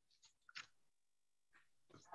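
Near silence on a video-call audio line, with one faint brief sound about half a second in.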